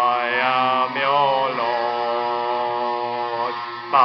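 A voice singing long, held 'oh' notes in a chant-like way, the pitch wavering slightly, with a short break about a second in before the next long note.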